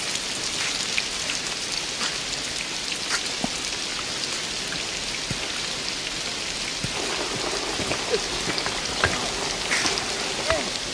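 Heavy rain falling steadily on a street, a constant hiss with scattered drips and taps.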